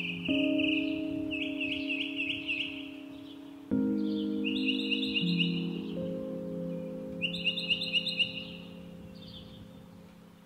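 Slow, mellow chillhop music: sustained keyboard-like chords that change about four seconds in, with bird chirps and trills over them, fading away near the end.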